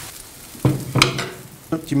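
Metal balloon whisk stirring fried bacon, grated carrot, celery and onion into a stainless steel pot of cooking lentil soup, with a sharp metallic clink against the pot about a second in.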